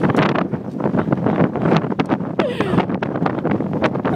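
Wind buffeting the microphone of a handheld camera in the open: a loud, uneven rush of noise with irregular gusty peaks.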